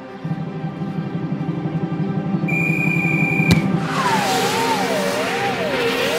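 Cartoon soundtrack music with a fast low drum roll building tension. A short high held tone ends in a sharp knock about three and a half seconds in. A whooshing effect follows, with a wavering whistle-like tone that slides down and up.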